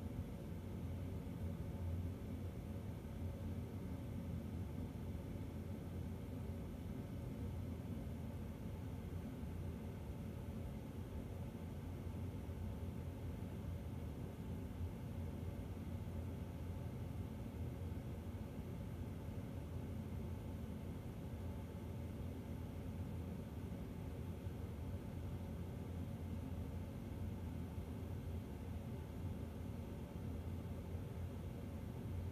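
Faint, steady low hum with a light hiss and no distinct events: room tone.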